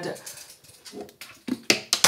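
Skincare bottles and the door of a bathroom wall cabinet knocking: three sharp clicks and knocks close together in the second half.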